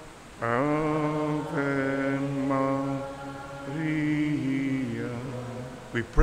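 A single man's voice singing a slow, hymn-like prayer song unaccompanied, holding a line of about five long notes with short breaks between them.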